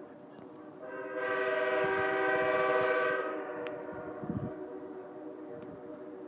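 Horn of the approaching Winter Park Express locomotive sounding one long chord-like blast, starting about a second in and lasting around three seconds before fading. A fainter steady drone of the train carries on beneath it.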